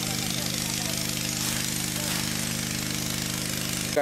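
Small portable fire-pump engine running steadily at an even speed, with a constant hiss over it. It cuts off suddenly at the very end.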